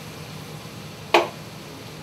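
A single sharp clink about a second in as a stemmed wine glass is set down on the kitchen's steel counter, over the steady hum of the kitchen's ventilation hood.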